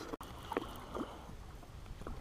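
Faint wind and water noise around a small boat on choppy water, with a few light ticks about half a second and a second in.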